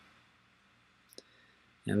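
Near silence, broken by a single faint click about a second in.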